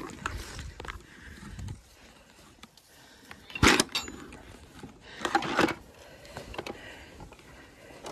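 A metal bolt latch on a wooden field gate worked by hand: one sharp, loud clack a little before four seconds in, then a shorter rattle of the gate about a second and a half later.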